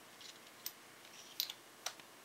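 A few light, sharp clicks and taps of small metal parts as the case half of a scale RC four-wheel-drive transmission is fitted back on by hand.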